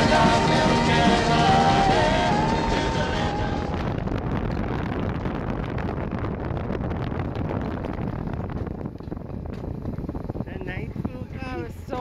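Background music fades out over the first few seconds, giving way to wind rushing over the microphone and the rattle of a mountain-coaster sled running along its steel rails. Voices come in near the end.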